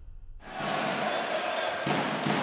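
Intro music fading out, then, about half a second in, the sound of a basketball arena cuts in suddenly: the steady noise of the crowd at a live game.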